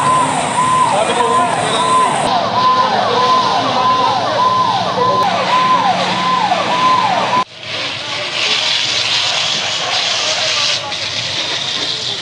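Emergency vehicle siren sounding a fast repeating falling sweep, about two cycles a second, which cuts off abruptly about seven and a half seconds in. A steady rushing noise follows.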